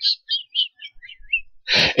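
A man's laughter trailing off into high, squeaky, wheezing giggles: a run of short chirp-like squeaks, each a little lower in pitch than the last.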